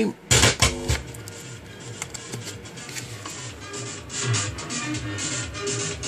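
Music from an FM radio broadcast, received by a vintage Sony ST-80F valve-era tuner and played through a hi-fi amplifier and speaker. In the first second there are a few sharp crackles as the audio lead's plug is handled at the socket.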